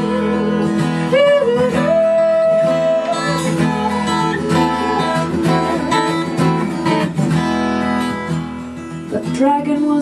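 Live acoustic song: a woman singing over a strummed acoustic guitar, holding one note for about a second near two seconds in.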